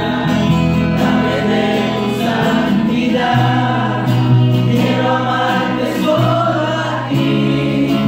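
Live Christian worship music: singing over acoustic guitar accompaniment, with held notes and a bass line that moves to a new note a few times.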